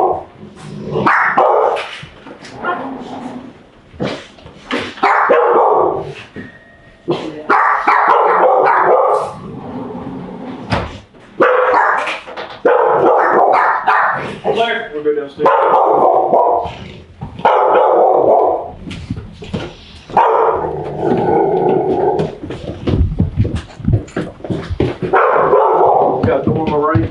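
A dog barking over and over inside the house, in loud bursts every second or two, with a few low thumps near the end.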